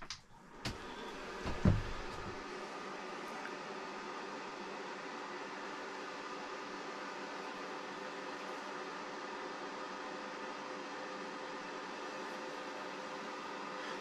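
Panda portable clothes dryer being switched on: two clicks in the first two seconds, then its fan heater running steadily with an even rush of air and faint steady hum.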